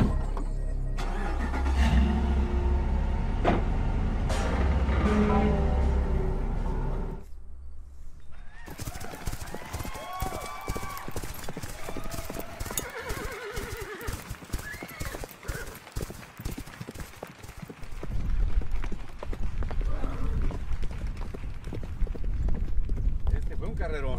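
Background music for the first seven seconds, then galloping racehorses: a rapid run of hoofbeats on a dirt track with horses neighing several times.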